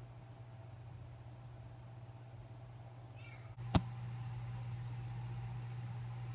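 A low steady hum with one sharp click a little past halfway, after which the hum is slightly louder. Just before the click come a few faint, high, gliding calls.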